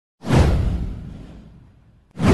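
A whoosh sound effect with a deep boom underneath. It comes in sharply a moment in and fades away over about a second and a half.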